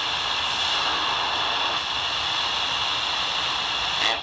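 Steady hiss and static from a Tecsun R9012 portable shortwave receiver's speaker, tuned to an 80-metre amateur AM frequency during a pause in the received operator's speech.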